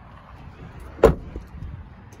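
A pickup truck door shut once about a second in, a single heavy thump, with softer handling knocks around it.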